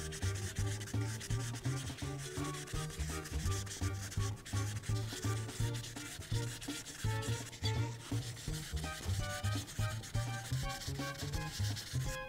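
Prismacolor marker tip rubbing back and forth across paper in quick repeated strokes as an area is filled in with colour. Background music plays underneath.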